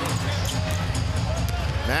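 A basketball being dribbled on a hardwood court during live play, under arena music and crowd noise.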